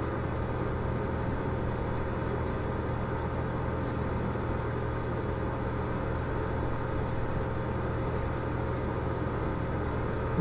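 A steady low hum over a faint even hiss, unchanging throughout, with no other events.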